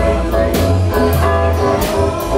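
Live band music: a drum kit with cymbal strikes roughly every half second over a steady bass line and guitar.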